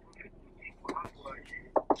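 Faint voices with a few short clicks, ending in two sharper knocks in quick succession.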